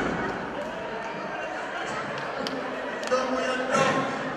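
Music fading out, then faint voices in a large hall, with a couple of sharp clicks about two and a half and three seconds in.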